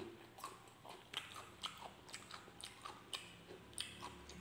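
A mouth chewing a bite of raw cucumber: irregular crunchy clicks, a few each second.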